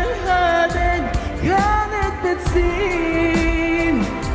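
A young female singer performing a song in Arabic live into a handheld microphone over backing music with a steady beat. In the second half she holds one long, steady note.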